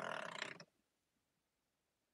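A man's short breathy exhale, about half a second long, right at the start.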